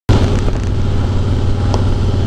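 Harley-Davidson Heritage Softail's V-twin engine running steadily while cruising on the open road, with road and wind noise.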